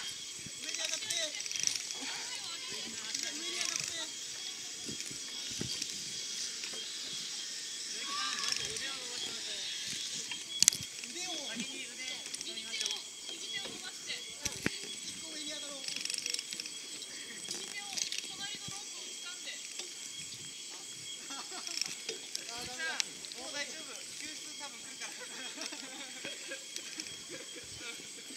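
Zip line trolley's pulley wheels running along a steel cable: a steady hiss with a faint high whine, and one sharp click about eleven seconds in.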